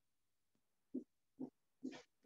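Near silence broken by three brief, faint, low murmurs like a man's voice under his breath, about a second in, a moment later, and near the end.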